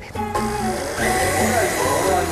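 Background music with a steady, repeating bass line. About a second in, a hissing noise swells in over it.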